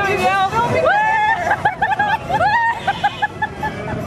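Two women whooping and laughing on a spinning ride: a rising 'whoo' about a second in, then more cries and a quick run of short laughs, over background chatter.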